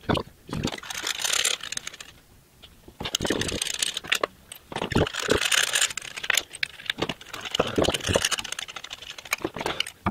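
Irregular clicks and scrapes of a telescoping magnetic pickup tool and loosened spark plugs being drawn up out of the engine's spark plug wells, in clusters with a short pause about two seconds in.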